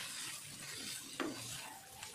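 Wooden spatula stirring raw potato cubes and green beans in an oiled wok-style pan over a soft, steady sizzle of frying. One louder knock of the spatula against the pan comes about a second in.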